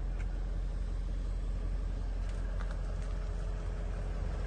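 Range Rover 4.4 TDV8 twin-turbo diesel V8 idling steadily, heard from inside the cabin.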